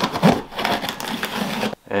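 Clear plastic wrap and tape on a cardboard box crackling and ripping as the box is pulled open, in quick irregular bursts that stop near the end.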